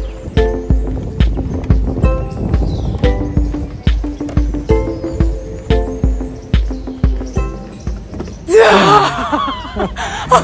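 Background music with a steady beat. Near the end a loud gasping exhale breaks in as a held breath is let out.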